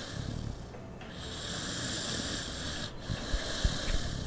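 Mixed-breed dog snoring in its sleep: long noisy breaths broken by short pauses about every two seconds, with a few short low thumps near the end.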